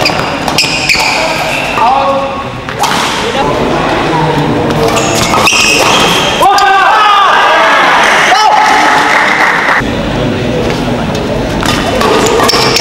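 Badminton rally: sharp cracks of rackets hitting the shuttlecock, including hard smashes, a few seconds apart, with swishes of racket swings.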